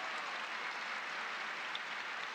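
A large theatre audience applauding, a dense, steady clapping.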